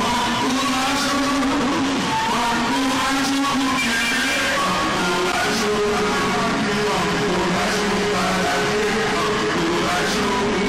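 Background music: held, stepping melodic notes at a steady level.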